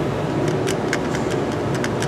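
Hand grease gun being pumped into the grease fitting of a brake hub: a run of faint clicks from the gun, over a steady mechanical hum.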